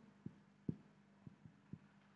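Faint, soft low knocks of a marker tip tapping against a whiteboard while writing an equation, about five spread over two seconds, over a faint steady hum.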